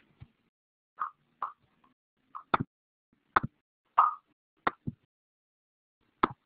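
A scatter of short clicks and pops, about ten in six seconds, irregularly spaced with near silence between them.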